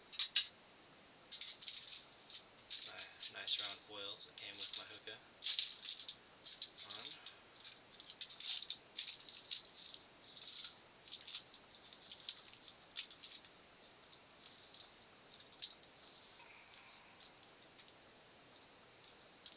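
Crinkling and crackling of thin foil worked by hand, in irregular bunches of small clicks that thin out after about twelve seconds, over a faint steady high whine.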